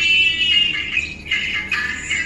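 A recorded song playing, its high melody line carrying most of the sound, with little bass.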